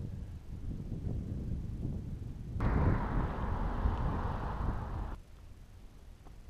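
Wind buffeting the camera's microphone, a steady low rumble. A louder, hissier stretch starts abruptly about two and a half seconds in and cuts off just past the five-second mark.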